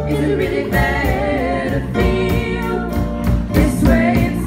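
Live rock band playing, with several singers singing together over electric bass, keyboard and a steady drum beat.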